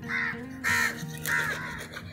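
A crow cawing three times, each caw short and loud, over soft background music.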